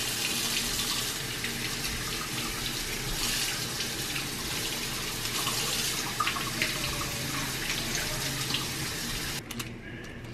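Kitchen faucet running water into a stainless steel sink as things are rinsed under the stream, a steady rush of water that is shut off abruptly near the end.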